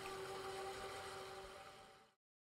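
Faint room tone: a steady low hiss with a quiet constant hum, fading out and cutting to silence at the very end.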